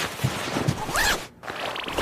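Cartoon sound effect of a zipper being pulled up. Fabric rustles first, then a short rising swish about a second in, and a quick run of zipper-teeth ticks near the end.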